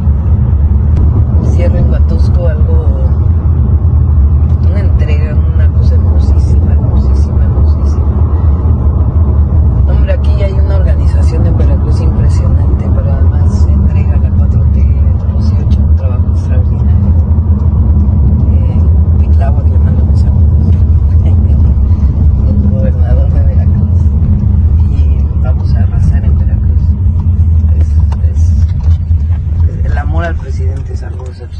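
Steady low rumble of road and engine noise inside a moving car's cabin, with a woman's voice talking faintly over it.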